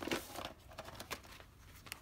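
Faint rustling and small clicks from a plastic card folder being picked up and handled, busiest in the first second and then quieter.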